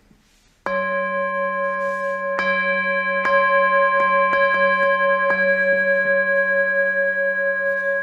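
Singing bowl ringing: a steady chord of several clear tones with a slow wavering in its main note, starting suddenly about a second in and holding at an even level, with faint soft taps about once a second.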